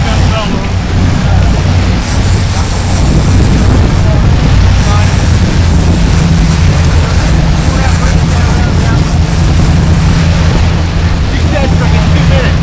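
Sportfishing boat's engines running loud and steady, with water churning in the wake.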